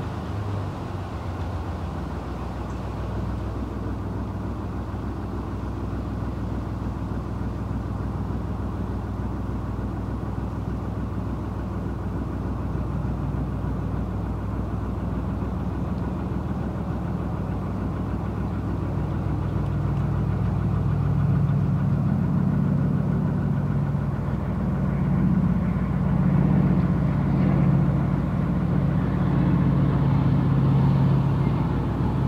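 Narrowboat's diesel engine running steadily at cruising speed, a low, even drone that grows a little louder and fuller in the second half.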